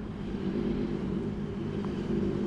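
Steady low rumble of street traffic, a vehicle engine running.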